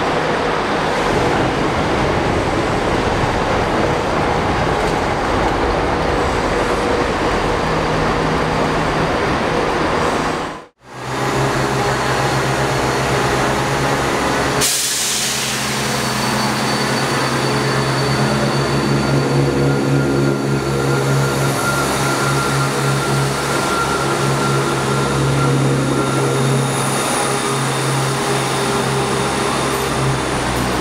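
Class 170 Turbostar diesel multiple unit: first a dense rumble as it comes into the station, then, after a brief break, its diesel engines running with a steady low hum and throb as it pulls away from the platform.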